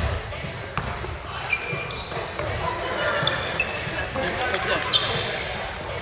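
Basketball game in an echoing gym: a ball bouncing on the hardwood court a few times and sneakers squeaking in short, high chirps, over players' voices calling out.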